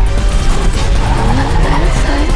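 Trailer soundtrack of a car speeding with engine and tyre squeal, mixed over music.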